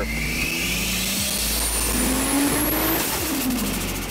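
Toyota Chaser drift car accelerating toward the camera. Its engine note rises for about three seconds, with a high whistle climbing alongside it, then drops near the end as it eases off.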